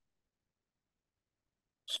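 Near silence: the audio cuts out completely during a pause in talk, with the hissy start of a man's speech in the last moment.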